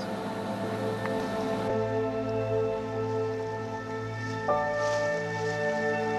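Background music of slow, sustained chords that change twice.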